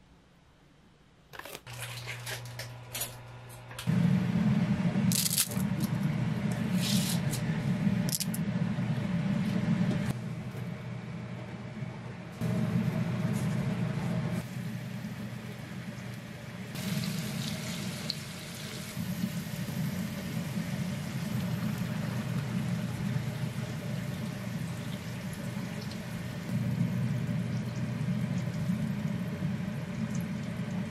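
Cooking sounds: water at a rolling boil in a pot of spaghetti, stirred with silicone tongs, starting about a second and a half in, with a steady low hum underneath and a few sharp clicks of the tongs against the cookware in the first several seconds.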